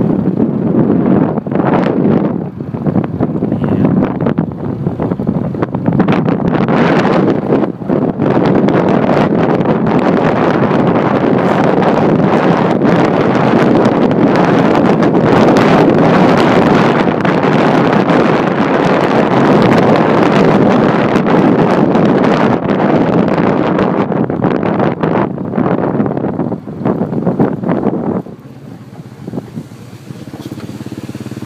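Heavy wind buffeting the microphone on a moving motorbike, with the bike's engine running underneath. The wind noise drops sharply near the end, leaving the engine clearer.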